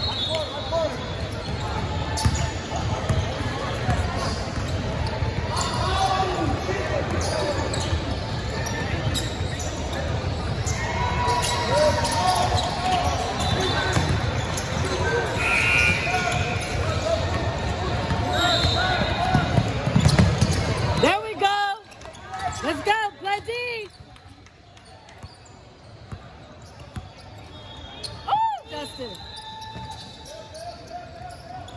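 Basketball game sounds in a big echoing gym: a ball dribbling on a hardwood court, players and spectators calling out, and sneakers squeaking. The general din drops sharply about two-thirds of the way through, leaving a few short, sharp sneaker squeaks.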